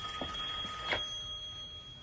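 A phone's electronic call tone: quiet, steady high tones held without a break, a lower one stopping about a second in, with a few faint clicks.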